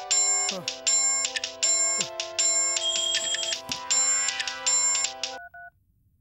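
Mobile phone ringtone playing a repeating electronic melody in short, even pulses. It stops a little after five seconds in as the call is answered.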